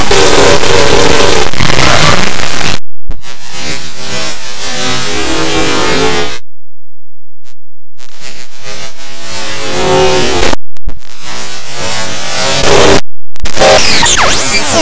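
Loud, harsh, heavily distorted music buried in static-like noise, typical of a digitally effect-processed cartoon soundtrack. It cuts out abruptly several times, the longest break lasting about a second and a half midway.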